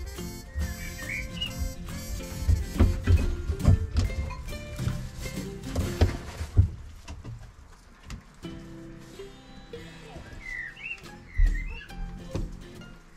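Background music, with a few short bird chirps about a second in and again near the end, and some low thumps.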